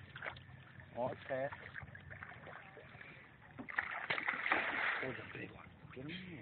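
Water splashing in a burst lasting about two seconds, past the middle: a hooked catfish thrashing at the surface as it is brought in. A faint voice is heard about a second in.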